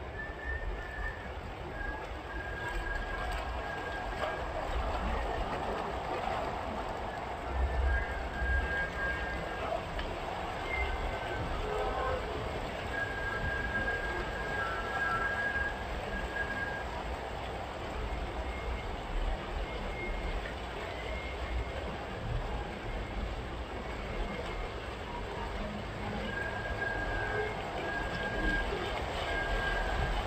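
A car wading through deep floodwater: a steady rush of water surging and splashing along the car's side and wheels over a low engine and traffic rumble. Thin high tones come and go several times.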